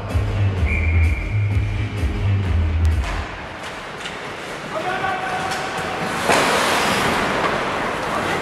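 Music with a pulsing bass beat over the rink's public-address system, cut off about three seconds in as play restarts. After it come a few shouted voices and, from about six seconds in, a loud steady hiss of noise.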